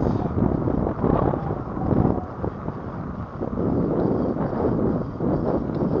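Wind buffeting the microphone of a handlebar-mounted camera on an electric bike riding over cracked, potholed asphalt, with uneven jolts and rattles from the rough surface.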